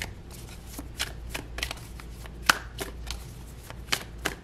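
A deck of cards being shuffled by hand: soft papery rustle broken by irregular sharp card clicks, the loudest snap about two and a half seconds in.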